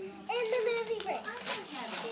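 A young girl's high-pitched voice, rising and falling, from just after the start until near the end, with no clear words.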